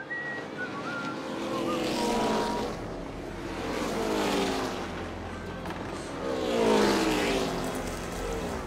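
Race cars speeding past on a track in three passes, each dropping in pitch as it goes by, the last one the loudest, over a steady low rumble.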